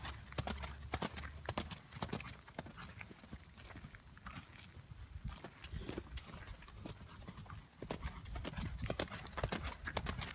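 A horse trotting on a gravel ring, its hoofbeats crunching in a steady, even rhythm. A faint high chirp repeats about three times a second behind the hoofbeats.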